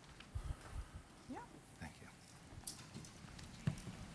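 Footsteps of hard-soled shoes on a wooden stage floor, an uneven run of soft footfalls, with a louder thump near the end as someone sits down in an armchair.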